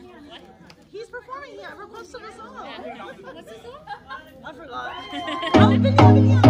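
Guests chattering in a large hall, then loud dance music with a heavy bass beat starts suddenly about five and a half seconds in.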